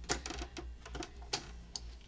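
Sewing machine with a walking foot taking a few slow, short stitches: several sharp, irregularly spaced clicks from the needle and foot mechanism over a steady low hum.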